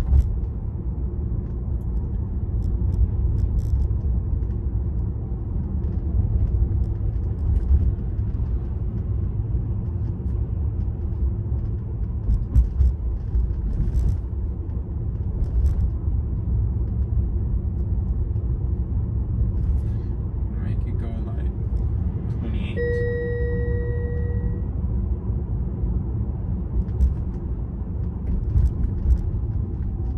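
Steady low road and tyre rumble heard inside the cabin of a Tesla electric car driving slowly, with no engine note. About 23 seconds in, a short electronic chime sounds at two steady pitches for about two seconds.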